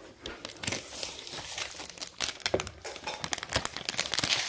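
Crinkling and rustling of thick 300 gsm cotton-blend watercolour paper and its plastic packet being handled and bent, with irregular small crackles.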